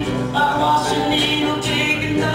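Live acoustic country-folk band of guitars, bass and mandolin, with a steel folding chair played with brushes as the percussion, under a held sung note.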